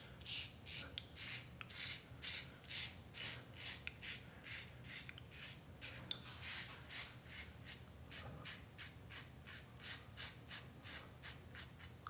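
Parker 64S double-edge safety razor with a Personna Prep blade cutting through two-day stubble on the first pass with the grain. It makes a quick run of short, crisp scratching strokes, about three or four a second.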